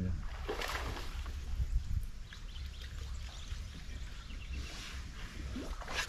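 A fishing reel being wound in while a hooked bass is played on a bent rod, under a steady low rumble of wind on the microphone, with a few faint brief scraping sounds near the start and near the end.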